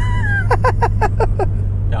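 A man laughing: a rising-then-falling whoop, then a quick run of about six 'ha's. Under it runs the steady low drone of the Ford Focus ST driving, heard inside the cabin.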